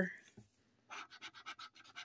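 Faint, quick scratching strokes of a scratcher tool on a scratch-off lottery ticket, rubbing off the coating. The strokes come in a rapid run of about a second, near the middle.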